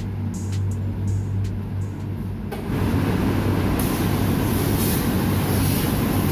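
Steady electric hum of a vacuum ironing table's suction motor, joined about two and a half seconds in by a louder, steady rushing noise.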